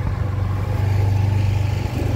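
A vehicle engine running steadily with a constant low hum.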